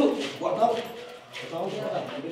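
People's voices, with a dip in loudness just after the first second.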